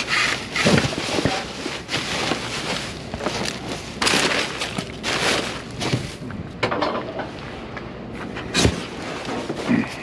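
Plastic sheeting and cardboard boxes being rummaged and shoved about in a metal dumpster: irregular crackling and rustling with a few knocks and thuds, the sharpest one near the end.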